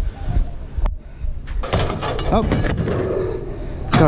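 Junk being handled and loaded into a pickup truck bed: scraping and rustling, a few knocks, and a sharp thud near the end as a wooden panel goes into the bed, over rumble on the microphone.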